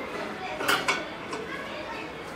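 Stainless steel pot being set down and shifted on the metal pan support of a gas stove, with a couple of sharp metal clinks just under a second in.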